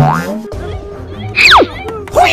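Cartoon comedy sound effects over background music: a quick rising boing-like glide at the start, then a loud falling whistle tone about one and a half seconds in.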